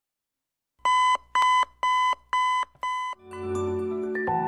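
Electronic alarm beeping: five identical short, high beeps about two a second, starting about a second in. Music with sustained tones fades in near the end.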